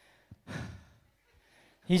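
A short breathy sigh picked up by a handheld stage microphone about half a second in, just after a small click. A man starts speaking at the very end.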